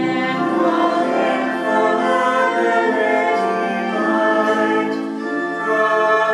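A hymn being sung, with voices holding chords that change every second or so.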